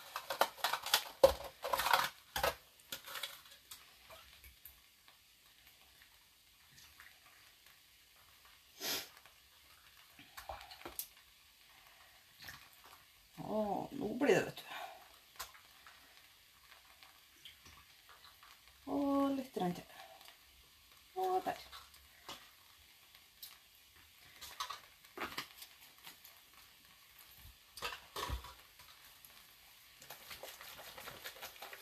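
Scattered light clicks and knocks of plastic bowls and dye containers being handled on a table, densest in the first few seconds, with a single sharper tick a little before the middle. A few short murmured words break in around the middle.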